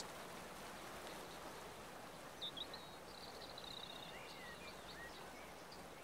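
Faint outdoor ambience, a steady soft hiss, with a few brief high chirps and a short trill from a small bird near the middle.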